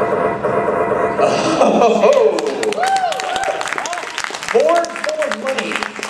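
Computerised dice-roll sound effects from a Farkle game played over a hall's sound system: a fast clatter of clicks, with several short electronic blips that rise and fall in pitch as scoring dice come up. A short laugh comes about two seconds in.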